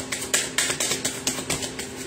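Tarot cards being shuffled by hand: a quick series of soft card clicks and slaps, about five a second, growing slightly softer.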